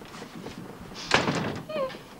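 A door slams shut once, loudly, about a second in, as one side of a heated argument walks out. A brief high-pitched sound falling in pitch follows just before the end.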